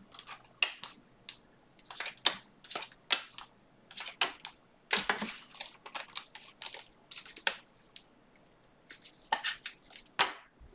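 Trading cards being flipped through by hand and set down one by one: an irregular run of crisp card-stock flicks and taps, a few a second, with a longer rustle about halfway through.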